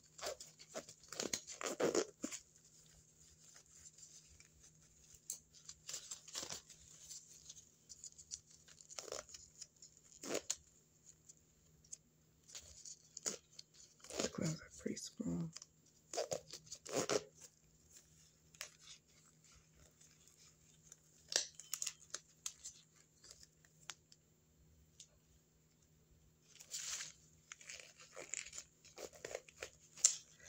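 Thin exam gloves being handled and pulled off, giving scattered short bursts of crinkling and rubbery snapping.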